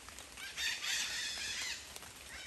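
A rooster crowing once, faint, lasting about a second and a half.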